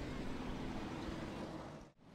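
IMCA Hobby Stock race cars' engines running slowly around the dirt track under caution, heard as a faint, low, steady drone with track ambience. The sound cuts out abruptly near the end.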